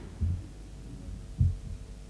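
A pause with a faint steady hum and two short, dull low thumps about a second apart.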